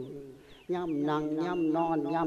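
Thai Buddhist monk's voice in a sung lae sermon: a falling tone trails off, then after a short pause he holds one long, slightly wavering note.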